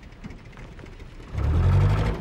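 Engine of a Land Rover Series-type 4x4 running loudly as it drives up, the loud low engine sound starting suddenly about one and a half seconds in after a quieter stretch.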